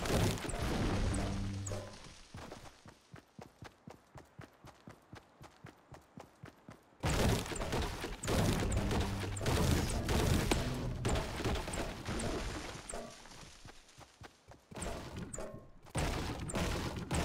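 Shopping cart rattling and clattering as it rolls, with a fast run of clicks for a few seconds, then suddenly much louder about seven seconds in.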